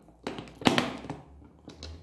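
Metal carrying handle of an aluminium makeup case clicking and knocking against its mounts as it is worked by hand: two sharp clicks in the first second, the second the louder, and a faint one near the end. The handle has come unseated from its fitting.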